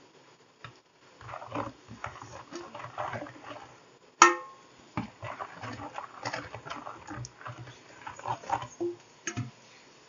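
Hand sweeping fresh drumstick (moringa) leaves off a steel plate into a steel bowl: irregular rustling and scraping of leaves on metal, with one sharp ringing clink of steel on steel about four seconds in.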